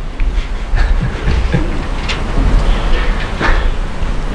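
Laughter from men in a small room, heard as breathy, irregular bursts over a steady low rumble.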